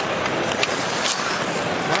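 Ice hockey game sound: a steady arena crowd hum with skates scraping the ice, and two sharp clicks about half a second and a second in.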